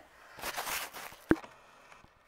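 Rustling handling noise as the camera is picked up and moved closer, ending in a single sharp click about a second and a half in.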